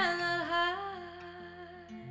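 A woman singing one long held note over soft acoustic guitar, the note dipping slightly in pitch about half a second in and then slowly fading away.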